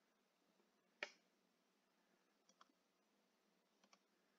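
Near silence with a single computer mouse click about a second in, then two much fainter clicks later on.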